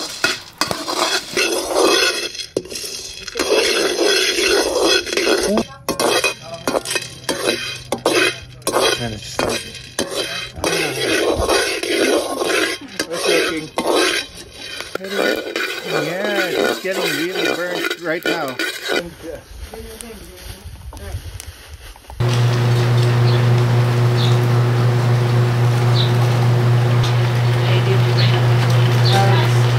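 A metal spoon scraping and rattling green Liberica coffee beans around a steel wok as they are stirred during hand roasting, with voices talking over it. About 22 seconds in, a loud steady low hum starts abruptly and holds.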